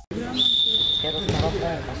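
Ball thuds and shouting voices echo around a sports hall during an indoor football match. A single steady high whistle sounds for about a second near the start.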